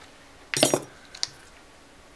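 A short clink as the LED backlight strip is handled and knocks against the panel, and a thin sharp tick about a second later.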